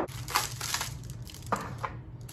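A sharp knock at the very start as a glass shot glass is set down on the bar, then clear plastic wrap crinkling in two short rustles, about half a second in and about a second and a half in, as the wrapped serving tray is lifted out of its cardboard box.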